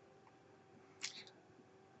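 Near silence: room tone with a faint steady hum, and one brief, faint sound about a second in.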